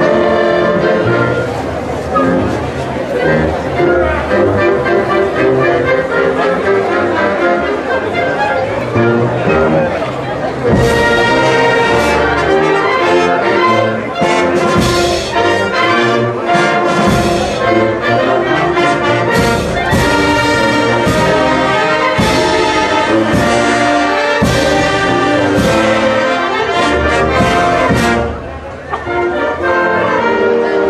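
Wind band playing, led by brass with a sousaphone on the bass line. About eleven seconds in the music turns fuller and louder with sharp accented hits, and it eases briefly near the end.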